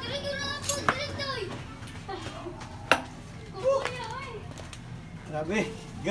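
Children's voices chattering in the background, with two sharp metallic clicks of a hand tool on the motorcycle's spoked wheel, about one second in and about three seconds in, the second the loudest.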